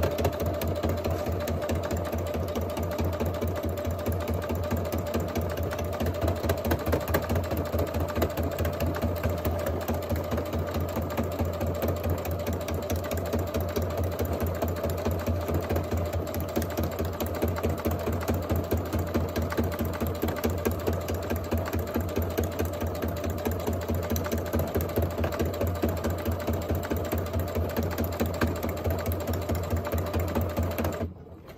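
Computerized sewing machine running steadily, sewing a single straight stitch through the layered fabric and napkin of an envelope, the needle going up and down rapidly without a break.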